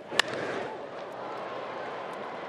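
Crack of a wooden baseball bat hitting a pitched ball, once, just after the start, followed by the ballpark crowd's noise swelling and then holding steady.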